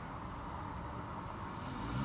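Steady low rumble in a parked car's cabin, with a low hum swelling near the end.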